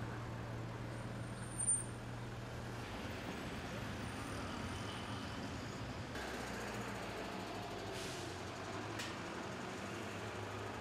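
Street traffic noise: a steady hum of vehicles on the road, with a brief high-pitched squeal a little under two seconds in.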